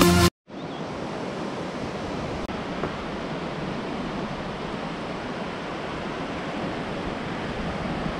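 Music cuts off just after the start, and then a steady hiss of sea surf washing onto a sandy beach runs on evenly.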